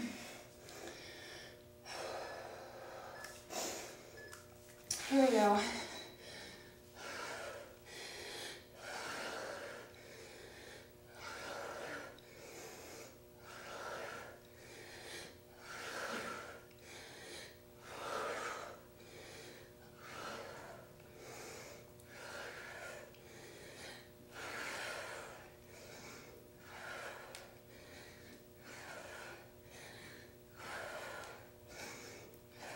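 A woman breathing hard during push-ups, one audible breath roughly every second. A brief, louder vocal sound comes about five seconds in.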